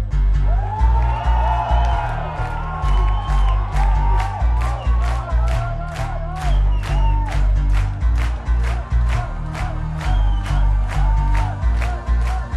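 Synth-pop band playing a loud, fast electronic track live through the PA: heavy pulsing synth bass and a rapid hi-hat tick about four times a second, with the crowd cheering.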